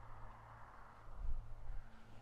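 Wind rumbling on the microphone, with one stronger gust about a second in, over a faint steady hum.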